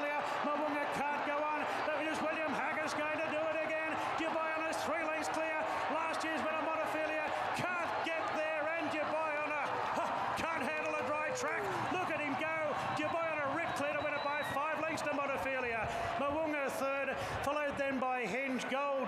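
A racecourse crowd yelling and cheering as the horses run to the finish: many voices at once, some long held shouts, with scattered sharp claps or clicks.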